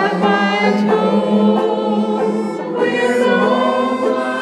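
Several voices singing a slow song together, a continuous sung melody.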